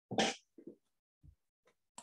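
A single short, sharp burst of a person's breath noise, then a few faint soft sounds.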